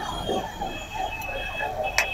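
Indistinct voices over a live stage sound system, with a thin steady high-pitched tone coming in about halfway through and a sharp click at the very end.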